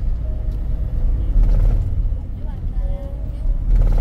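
Passenger van driving, heard from inside the cabin: a loud, steady low rumble of engine and road noise.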